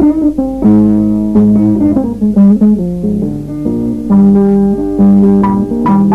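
Guinean instrumental ensemble music: plucked string instruments play a melody of ringing notes over a strong bass line, starting loud right at the opening.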